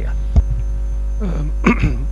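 Steady low electrical mains hum in the sound system. A single sharp thump comes about half a second in as the desk microphone is handled, and faint voices come near the end.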